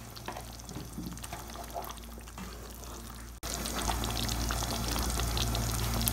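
A pan of thick eggplant curry simmering, faint with scattered small pops at first. After an abrupt jump about three and a half seconds in, it sizzles and spits much louder: the curry is cooked down on a low flame until the oil has separated.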